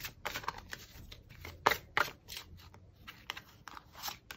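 A deck of tarot cards being shuffled and handled by hand: a run of short, irregular card snaps and rustles, the loudest a little under two seconds in.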